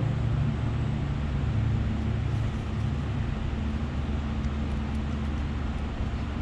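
Steady low mechanical hum with a constant pitch and an even hiss above it, the running of a motor-driven machine in the background.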